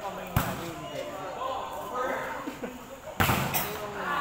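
A volleyball being struck by hand twice, two sharp slaps about three seconds apart, with players' voices calling around the court.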